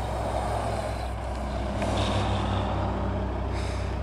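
Semi-truck's diesel engine running steadily as the rig pulls away, with a short hiss about two seconds in.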